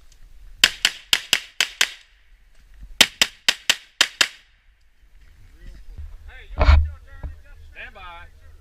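Pistol fire in two rapid strings of about six shots each, about four shots a second, with a pause of about a second between strings. Near the end there is a single loud thump.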